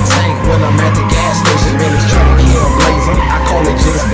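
Car tyres squealing and skidding as a car spins donuts, over a hip-hop beat with heavy bass.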